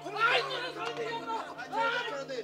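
Several men's voices shouting and talking over one another during a scuffle, over a steady low hum.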